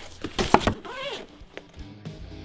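Hands handling and opening a cardboard guitar box: a few sharp knocks and scrapes in the first second, then a short wavering voice-like sound about a second in. Soft background music comes in during the second half.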